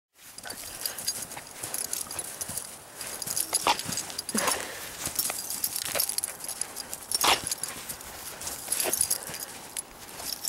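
A dog barking in short single barks, about five of them spaced a second or so apart, as she pounces at snow. Between the barks runs a steady scatter of small clicks and crunches.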